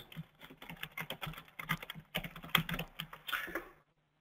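Computer keyboard typing: a run of irregular key clicks as a phrase is typed out, stopping just before the end.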